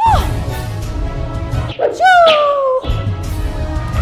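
Two long, falling whining cries like a dog's whimper, one at the start and one about two seconds in, over background music with a steady bass.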